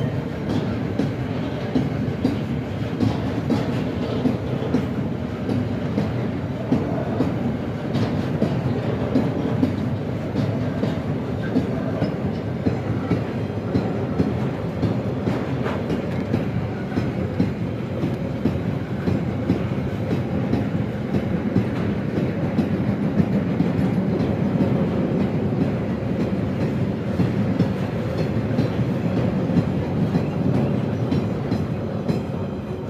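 A freight train of loaded car-carrier wagons rolling steadily past at a level crossing, its wheels rumbling and clattering over the rails.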